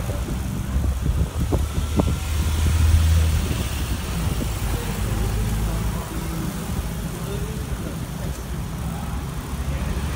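Street traffic heard from a bicycle riding among vehicles: a steady low rumble of motor vehicle engines, swelling around three seconds in.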